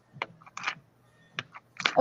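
A few light clicks and taps, spaced irregularly.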